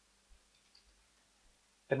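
Near silence with one faint, short computer click about a third of a second in, as a value is confirmed; a man's voice starts at the very end.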